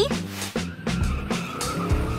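A car sound effect, an engine whine slowly rising in pitch with tyres squealing, over background music.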